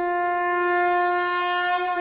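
One long, steady note held on a blown wind instrument, stopping right at the end.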